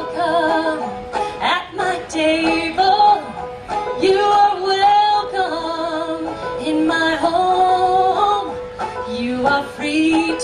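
A woman singing a folk song, accompanying herself on banjo.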